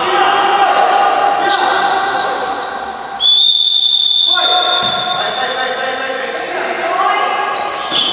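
A referee's whistle blows one long, steady blast a little over three seconds in, over players' shouts that echo around a large sports hall.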